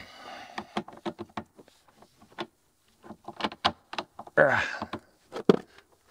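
Spring-loaded booster-cable clamp being worked onto a battery terminal: a series of sharp clicks and knocks from the clamp jaws and metal, in two clusters, with a short scuffing rustle near the end.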